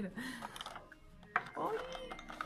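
Small PVC figures being handled in a clear plastic blister tray: light plastic clicking and rustling, with one sharp click a little over a second in.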